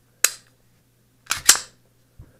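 Canik TP-9SA striker-fired pistol's action clicking as it is handled: one sharp metallic click as the slide-mounted decocker is pressed, then two quick clicks about a second later as the slide is gripped and worked.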